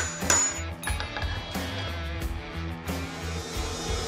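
A steel hammer striking a metal center punch into the end of a wooden leg blank to mark its center for lathe turning: a sharp metallic strike with a high ringing tail near the start, then a lighter tap about a second in. Background music plays throughout.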